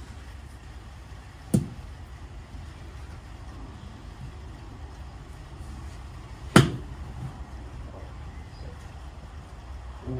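A wedge striking a golf ball off a driving-range mat: one sharp click about six and a half seconds in, the loudest sound here. A fainter click comes about a second and a half in, over a steady low rumble.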